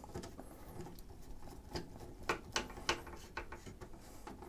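Screwdriver turning the retaining screw into a PC case's metal PCIe slot bracket: faint, irregular small clicks and scrapes of metal on metal.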